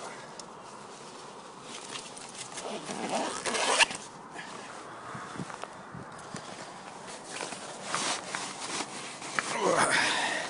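Rustling, scuffing and rasping of clothing and rubber wellington boots being pulled on and shifted on gravel, with a louder surge about three to four seconds in and another near the end.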